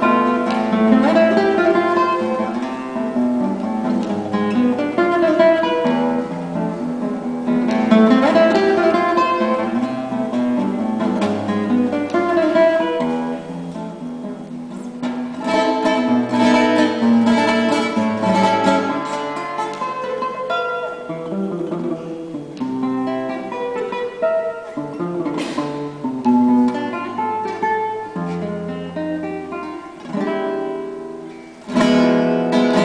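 Instrumental music on acoustic guitar, plucked and strummed, with the notes changing steadily throughout.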